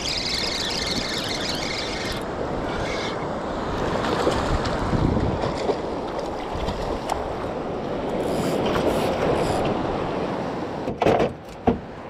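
Steady surf and wind noise on the microphone while wading. In about the first two seconds there is a high whir from a Piscifun Carbon X II spinning reel being cranked as a hooked fish is reeled in close. Water splashes and sloshes around the fish at the surface.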